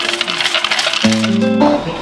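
Background acoustic guitar music. During the first second, a clinking rattle of draw tokens shaken in a wooden draw box.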